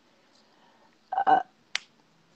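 About a second of near silence, then a woman's short hesitant "uh" heard over a video call, followed by a single sharp click.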